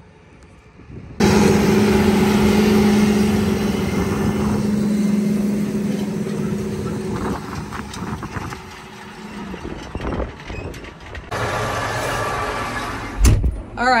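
Large farm tractor pulling a field cultivator past, its engine drone steady under load with a clatter of tillage. About a second in it starts suddenly, then fades gradually as the tractor moves away. Near the end there is a steadier hum and a short low thump.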